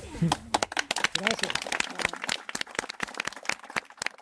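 A small group clapping: many irregular, separate hand claps, with faint voices underneath.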